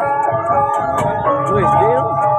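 Balinese gamelan accompanying a dance: metal-keyed instruments ringing in held, overlapping tones, with light regular strikes on top, about two or three a second.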